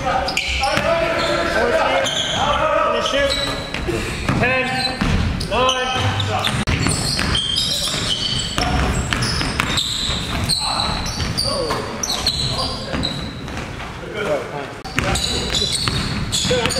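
A basketball being dribbled on a hardwood gym floor, with indistinct players' voices echoing in the hall.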